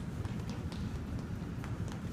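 A few faint taps of children's footsteps on a tiled floor over a steady low rumble of room noise.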